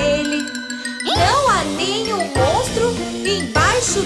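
Children's song music: a tinkling bell-like chime for about the first second, then a sliding melodic line over a bouncy bass from about a second in.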